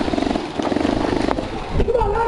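Airsoft electric gun firing a full-auto burst: a rapid rattling buzz of about twenty shots a second that lasts about a second and a half and then stops.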